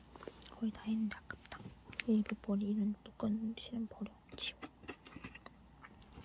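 A woman's soft, murmured voice in short broken phrases, too low to make out, with small sharp clicks and rustles of hands handling fabric and scissors.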